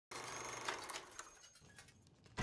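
Wind-up mechanical kitchen timer being turned, a rapid run of faint ratcheting clicks with a few sharper ticks, fading toward the end.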